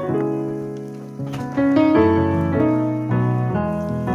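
Background piano music: single notes and chords struck one after another, each ringing on and fading.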